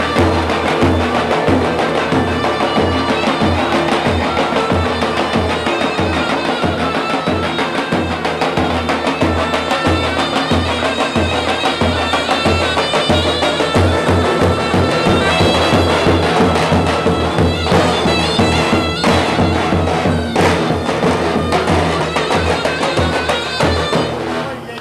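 Turkish davul and zurna playing a folk tune: the zurna carries the melody over a steady beat from the large bass drums.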